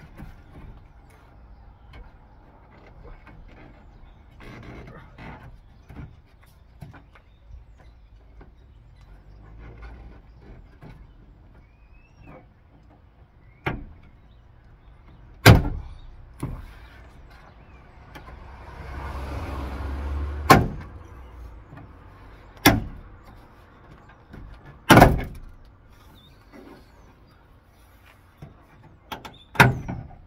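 Plastic trim clips snapping loose as the inner trim panel of a Peugeot Partner / Citroen Berlingo tailgate is pried off: about six sharp snaps over the second half, with quieter rustling and creaking of the plastic panel between them.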